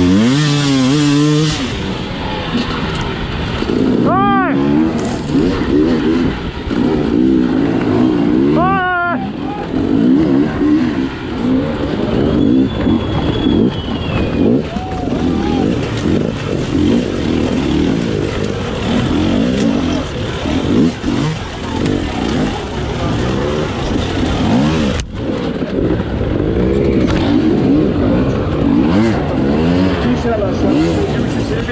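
Two-stroke enduro motorcycle engine, heard from onboard, revving hard with the throttle constantly opening and closing as the bike is ridden over rough ground. There are sharp rises in pitch about four and nine seconds in.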